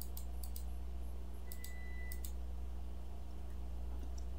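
Steady low electrical hum on the recording with a few faint clicks in small pairs during the first half, typical of a computer mouse being clicked. A short, faint high tone sounds about halfway through.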